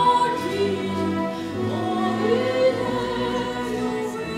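A woman singing an operetta aria in a trained voice, with held notes and a phrase that rises about two seconds in, accompanied by a chamber orchestra.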